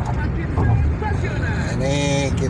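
Steady low rumble of road and engine noise inside a car's cabin while driving at highway speed.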